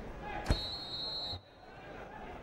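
A single loud thud about half a second in, followed at once by a high steady whistle-like tone lasting about a second. The background then drops suddenly quieter.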